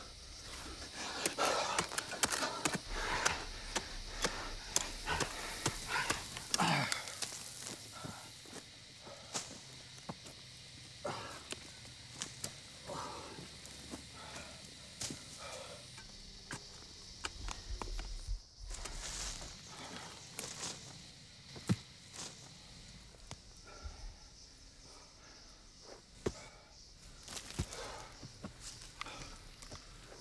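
Irregular scraping, scratching and small knocks of hands, a small scoop and a stick digging into dry soil and leaf litter, mixed with grunts and breaths of effort, mostly in the first several seconds.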